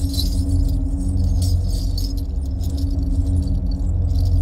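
Action-film soundtrack: a heavy, steady low background score with rapid metallic jangling and clinking over it.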